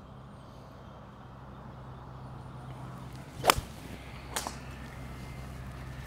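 Six-iron striking a golf ball off the turf on a full swing: one sharp crack a little past halfway, followed about a second later by a fainter click, over a steady low hum.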